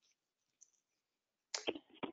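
Near silence on a webinar audio line, broken by a couple of short, faint clicks about a second and a half in.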